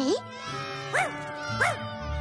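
Steady buzzing drone like a flying insect, with two short swoops up and down in pitch, about a second in and near the end.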